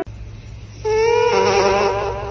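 A sleeping dog's snore or breath through the nose, picked up close by a microphone, comes out as a loud, wavering whistle-like tone for about a second. It sits over a steady electrical hum from the microphone's amplification.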